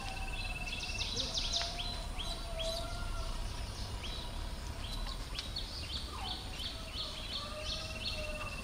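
Several birds calling in the background: series of short, high, repeated chirps and a fast trill near the start and again near the end, with fainter, lower whistled notes among them, over a steady low rumble.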